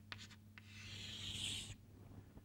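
Chalk writing on a blackboard: a few short taps and strokes, then one long scraping stroke of about a second, as a line is drawn, that stops suddenly.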